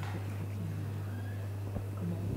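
A steady low electrical hum in the room's sound system, with faint, low murmured voices of people conferring close by.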